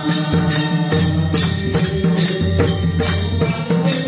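Varkari bhajan: a sung chant over a held harmonium drone, with hand cymbals (taal) struck in a steady beat of about two to three strikes a second.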